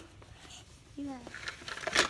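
Mostly quiet room with a few faint small clicks, broken by a young child's short vocal sound about a second in and another starting right at the end.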